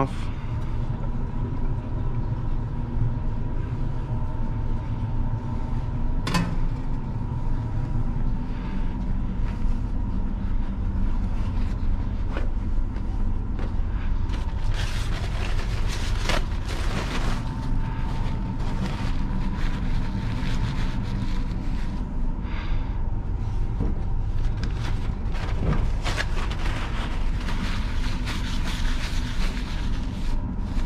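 A steady low mechanical hum with a faint constant whine runs throughout. A few light knocks come over it, and from about halfway a rubbing, scrubbing noise joins in.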